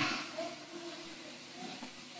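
A pause in speech: the faint steady hiss and room tone of an old recording, with the tail of a breathy hiss fading out at the very start.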